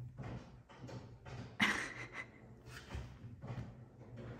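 Printer running by itself while it updates: a low steady hum with irregular mechanical clicks and whirring bursts, the loudest about a second and a half in.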